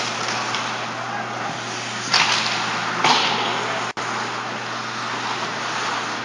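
Ice hockey play on the rink: skates, sticks and puck over a steady low hum, with two loud sharp hits about a second apart, around two and three seconds in.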